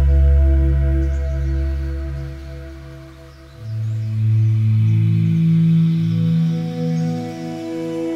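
Ambient background music of long, held tones over a deep bass note. The loudness dips a little past the middle, then the music moves to a new chord.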